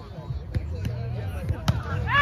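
Hands striking a volleyball during a rally: a few short, sharp slaps, the strongest near the end, over faint voices.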